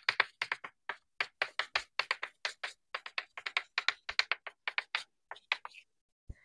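Chalk writing on a blackboard, sped up: a rapid, irregular run of sharp taps and short scratches, several a second.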